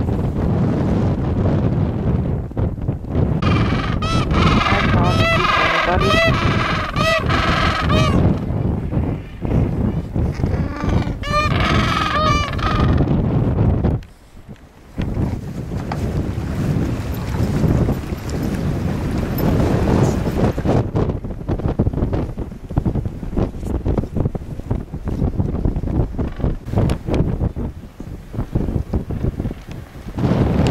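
Gentoo penguins braying: a long run of repeated rising-and-falling honking calls starting about four seconds in, and a shorter run around eleven seconds in. Wind buffets the microphone throughout.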